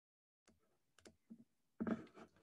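A handful of faint clicks from computer controls being worked, starting about half a second in, the loudest near the end.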